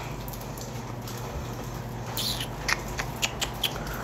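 A few light taps of fingers on a phone touchscreen, five or so short clicks in quick succession in the second half, over a steady low hum.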